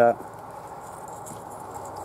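Fingers scratching lightly in potting compost around the top of a carrot in a pot, over a steady background hiss of wind.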